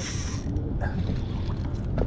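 Daiwa Certate spinning reel being cranked in against a hooked fish on a bent jigging rod, its gears working steadily, over a steady low rumble.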